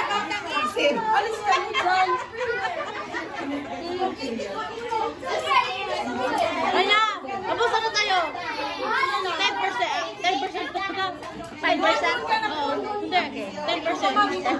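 Several adults and children talking and calling out over one another in continuous overlapping chatter.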